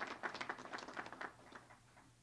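Crowd applauding, the clapping dying away over about a second and a half.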